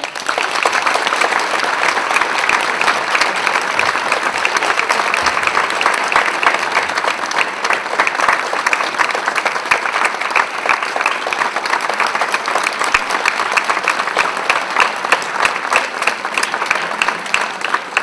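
Theatre audience applauding steadily, dense clapping from many hands, as a guest is welcomed onto the stage.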